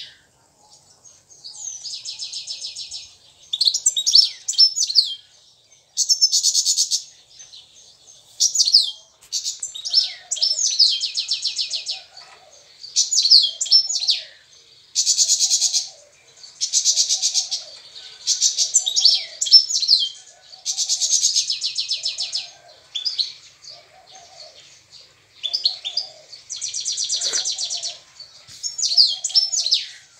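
European goldfinch singing in repeated bouts of quick, twittering notes and buzzy trills, each lasting a second or two with short pauses between them.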